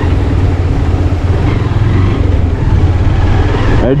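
Motorcycle riding over a rough gravel and stone road: a steady low rumble of engine and road noise picked up by a handlebar-mounted camera.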